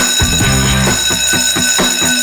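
An electric bell ringing continuously over intro music, its several high tones held steady throughout, with a bass line underneath.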